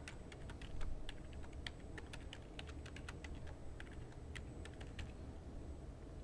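Computer keyboard typing: an eight-character password entered twice as a run of irregular key clicks, several a second, that stops shortly before the end.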